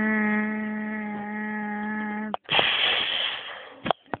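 A child's voice making sound effects for toy figures: a steady, level buzzing hum held for about two and a half seconds, then a hissing "kshhh" burst like a blast or explosion, as a gun turret is destroyed.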